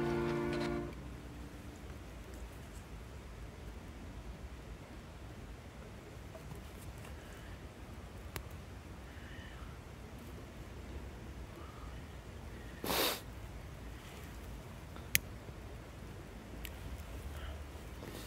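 Background music stops about a second in. After that a small fire of feather-stick kindling and split wood burns quietly, with a few sharp single crackles. A short burst of noise about two-thirds of the way through comes as logs are laid on.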